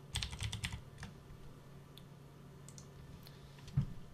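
Computer keyboard typing: a quick run of about six keystrokes in the first second, then a few scattered single key presses, with a soft thump near the end. A faint steady hum runs underneath.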